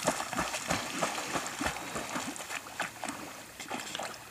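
Black Labrador pup swimming, with irregular small splashes and sloshing from her paddling in pond water as she reaches a floating mallard duck.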